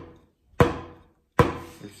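Two single, slow strokes on a snare drum (tarola) with wooden drumsticks, about a second apart, each ringing briefly. They are deliberate, exaggerated wrist-turn strokes played slowly for practice.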